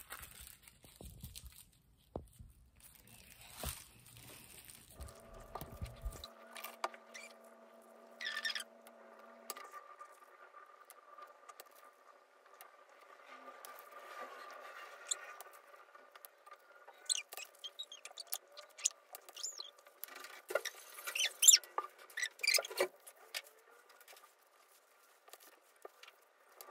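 Small handling noises of tissue paper craft work: soft rustling of tissue squares and sharp taps as a tissue-wrapped pencil end is pressed onto a paper sheet on the table, the taps clustering and loudest near the end. A faint steady high hum runs underneath from about five seconds in.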